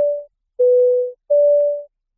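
Electronic two-tone beeps alternating high and low, each about half a second long with short gaps between. It is a transition sting marking the break between podcast segments.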